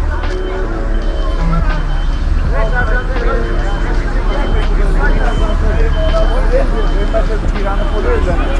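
Street sound by a construction site: several people talking at once over a heavy vehicle engine running steadily, with a high electronic beep repeating a little more than once a second, typical of a reversing alarm.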